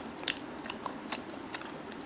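A person chewing crispy masala fried chicken close to a clip-on microphone: about six short, sharp crunches, the loudest near the start.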